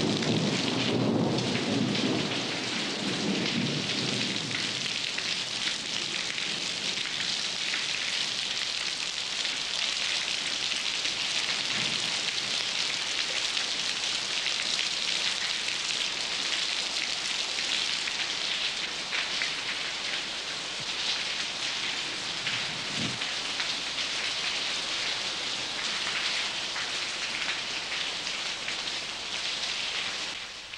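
Steady rain falling, with a low rumble of thunder in the first few seconds and two short, fainter low rumbles later, about twelve and twenty-three seconds in.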